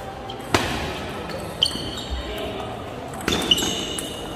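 Celluloid-type table tennis ball struck on a serve and in a short exchange, a few sharp clicks of ball on paddle and table. The loudest comes about half a second in, and a quick pair follows near the end.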